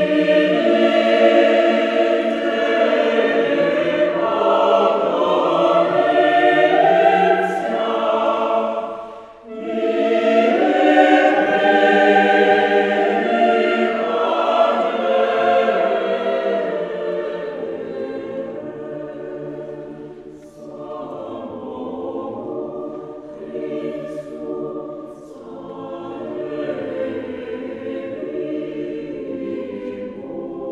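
Mixed choir of men and women singing a Russian Orthodox vespers setting without accompaniment. The full choir comes in loud at the start, breaks off briefly about nine seconds in, sings a second loud phrase, then goes on more softly from about seventeen seconds.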